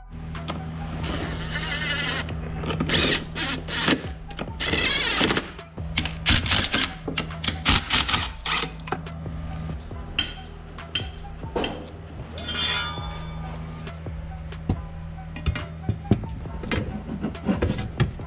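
Background music with held low tones and sharp percussive hits.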